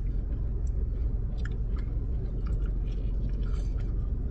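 Two people chewing and biting into sub sandwiches, with scattered soft crackles, over a steady low rumble inside a car cabin.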